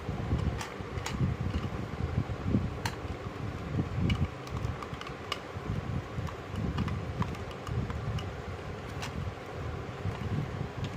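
Small plastic clicks and taps from a black plastic soap dispenser bottle being handled and turned over, a handful of sharp ticks spread out over a steady low background whir.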